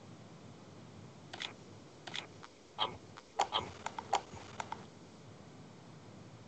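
Quiet room noise with a scatter of faint, short clicks and ticks, about eight of them in the middle few seconds.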